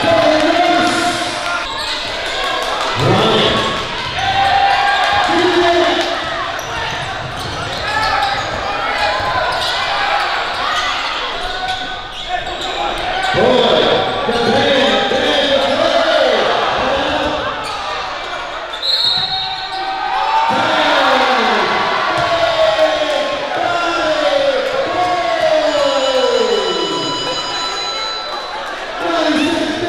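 Basketball game in a large gym: a ball bouncing on the hardwood court amid players and spectators shouting, with several drawn-out, falling calls near the end. A short high squeak about two-thirds of the way through.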